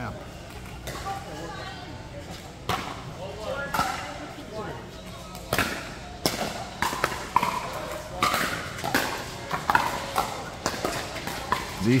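Pickleball paddles hitting a plastic ball back and forth in a doubles rally: a string of sharp hits, few at first and coming quickly in the second half, with voices talking in the background.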